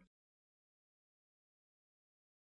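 Digital silence: a gap left for the learner to repeat the phrase.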